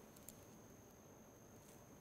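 Near silence: room tone with a faint steady high-pitched whine.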